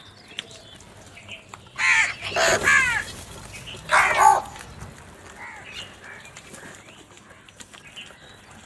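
House crows cawing: a quick run of loud, harsh caws about two seconds in, one more call about a second later, then fainter cawing from other birds in the flock.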